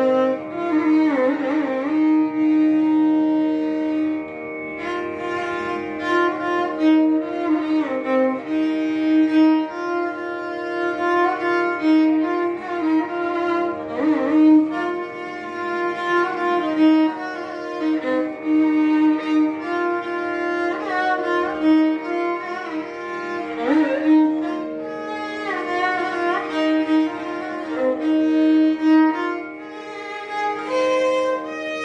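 Solo Carnatic violin playing a melody in raga Abhogi, full of sliding, ornamented notes, over a steady drone note.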